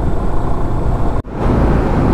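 Motorcycle ridden at road speed at night: steady wind, engine and tyre noise on the onboard microphone, which cuts out for an instant just past a second in.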